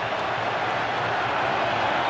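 Football stadium crowd: a steady hum of thousands of voices, swelling slightly.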